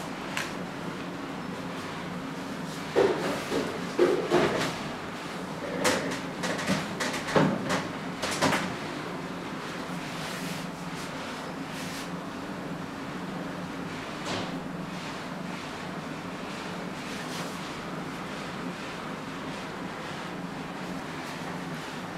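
A run of short knocks and clatters, like hard styling tools being handled and set down, between about three and nine seconds in, then a couple of single clicks, over a steady low room hum.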